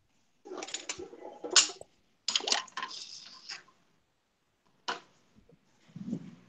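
Two bursts of rustling and knocking, each about a second and a half long, then a single sharp knock near the end. This is handling noise from the phone camera being carried and moved while walking.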